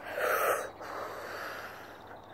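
A person's breath close to the microphone: one short, hard exhale lasting about half a second, just after the start, followed by faint background hiss.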